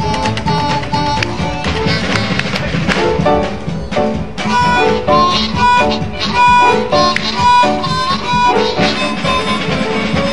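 Blues harmonica solo of held, wailing notes over a steady blues band accompaniment.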